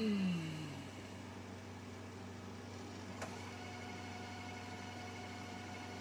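Samsung DVD/VCR combo deck rewinding a VHS tape. A motor whine falls in pitch over the first second, then the transport settles into a steady whir, with a single click about three seconds in.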